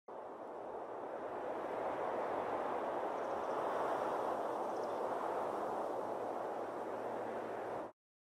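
A steady rushing noise with no distinct tone. It builds slightly over the first few seconds and stops abruptly just before the end.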